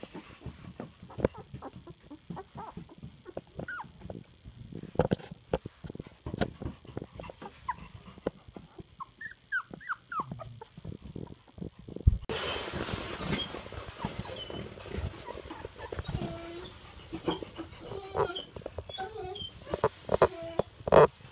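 Young puppies squeaking and whimpering: a few short high squeaks about halfway through, then several pups whining and squeaking together in the second half. Soft knocks and rubbing sounds come from hands handling the pups.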